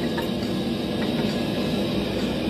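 Steady workshop background noise: a low hum with hiss, with two faint clicks.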